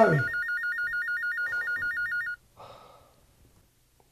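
Electronic telephone ring, a rapid warble between two high tones, cutting off a little over two seconds in as the call is answered.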